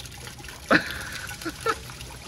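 Water draining through a half toilet's clogged trapway after a second flush, running slowly past the stuck brownies without clearing the bowl. A short vocal exclamation cuts in about a second in.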